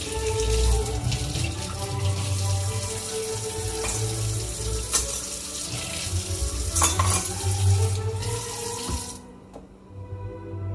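Kitchen tap running into the sink while dishes are washed by hand, with a couple of sharp knocks. The water is shut off about nine seconds in.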